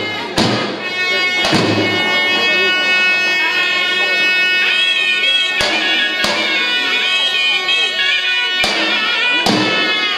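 Traditional Albanian dance music: a shawm plays a loud, wavering reed melody over occasional heavy strikes of a large double-headed daulle drum.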